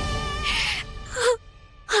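A woman crying: a breathy sob and a short whimper about a second in, over background music with long held notes that fade out partway through.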